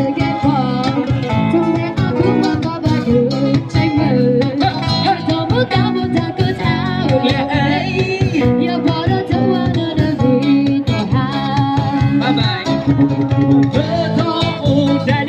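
Live amplified street band playing a song: strummed acoustic guitars, electric guitar and drums behind a singer at a microphone.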